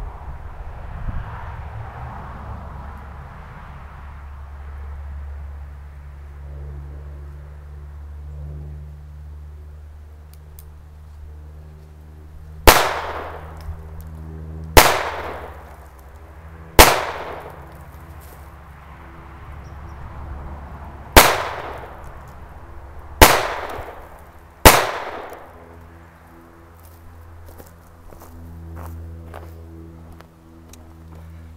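Six single shots from a Phoenix Arms HP22A .22 LR pistol, each a sharp crack with a short fading tail. Three come about two seconds apart starting some twelve seconds in, then after a pause of about four seconds three more follow in quick succession.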